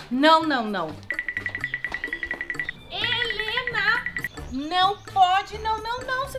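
Edited sound effects over background music: a falling pitched swoop, then a high, rapidly pulsing ringing tone like an alarm or phone ring for about a second and a half. The ringing returns briefly under vocal sounds.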